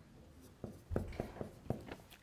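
Dry-erase marker writing on a whiteboard: a quick run of short squeaky strokes, beginning about half a second in.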